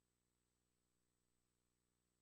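Near silence: only a very faint steady electrical hum and hiss.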